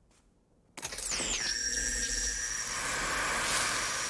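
Film sound effect of a hand buzzer electrocuting a man in mid-handshake. A loud electric buzzing crackle starts suddenly about three-quarters of a second in, with high whining tones that slide down and then hold steady.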